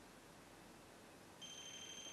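Near silence, then about two-thirds of the way in a small ghost-hunting trigger device on the floor starts sounding a steady high electronic beep tone as it is set off, its red light coming on.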